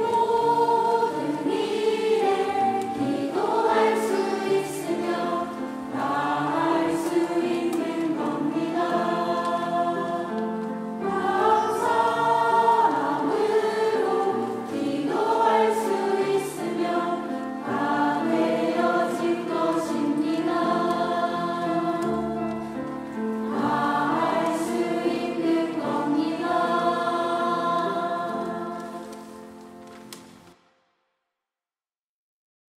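Church choir of mixed voices singing a sacred anthem under a conductor, dying away over the last few seconds.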